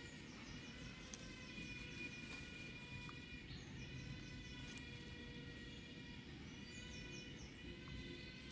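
Faint outdoor ambience: a steady whine of several held tones, with a few short runs of quick high chirps from a bird, about a second in and again near the end.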